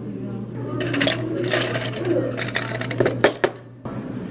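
Ice and utensils clicking and knocking against a plastic drink cup in quick, irregular strikes, loudest about three seconds in, over a low steady hum. It cuts off suddenly just before the end.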